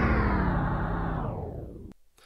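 The last chord of a rock intro jingle ringing out and fading, its high end dying away first, then cut off abruptly just before the end.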